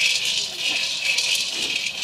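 Maize kernels roasting in a wok over a wood fire, rattling and ticking against the hot metal as they are stirred, over a steady high hiss.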